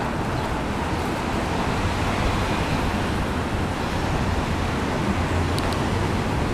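Steady road traffic noise, an even rush without distinct events.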